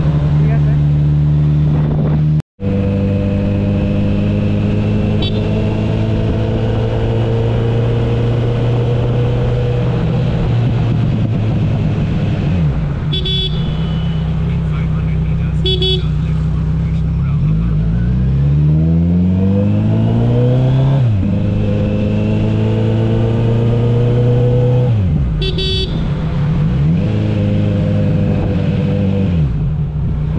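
Motorcycle engine running steadily under way, heard from the rider's seat. About two-thirds through it revs up through a gear and drops sharply at the shift. There are a few short horn toots from traffic, and the sound cuts out for an instant a few seconds in.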